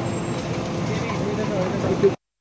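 Jumble of overlapping voices from a press crowd around a car, with vehicle engine and traffic noise underneath.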